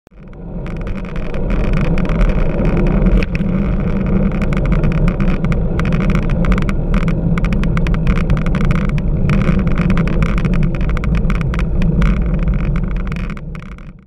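Wind buffeting a bicycle-mounted camera's microphone while riding, with tyre rumble on the road: a loud, deep, rough noise that fades in over the first second or so and fades out near the end.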